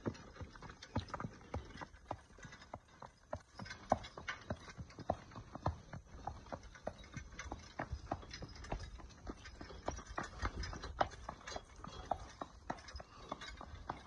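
Draft horse's hooves clip-clopping on a concrete drive at a walk: a steady run of sharp hoof strikes, several a second.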